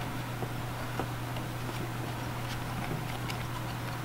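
A few faint clicks and handling noises from cut sock loops being woven by hand through a loom of wooden clothespins, over a steady low hum.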